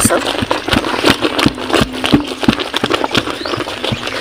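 A long wooden stick knocking and scraping against a metal cooking pot as thick wheat-and-rice flour papad dough is stirred and mashed. The knocks come irregularly, two or three a second.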